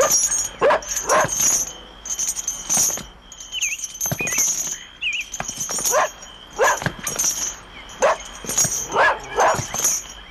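A dog barking repeatedly, in short groups of two or three barks, with a few high chirps about four to five seconds in.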